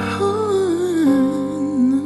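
A male voice hums or vocalises a wordless melody that winds downward in small ornamented steps, over sustained piano chords.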